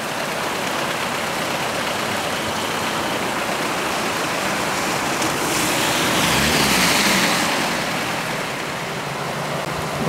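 Steady rushing of a muddy river in flood, running high and fast, swelling a little louder about six to seven seconds in.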